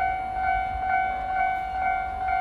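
Japanese level-crossing electronic warning bell ringing, a steady repeating bell tone, with a low rumble underneath.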